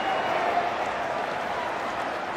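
Football stadium crowd cheering a touchdown, heard as a steady, even wash of noise.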